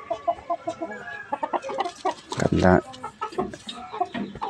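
Chickens clucking: many short, quick clucks from a flock, with one louder, longer call about two and a half seconds in.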